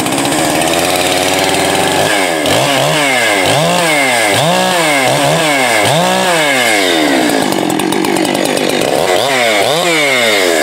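Husqvarna 385XP two-stroke chainsaw with a modified muffler, running free out of the wood. It holds steady for about two seconds, then is revved up and let fall back over and over, roughly once a second.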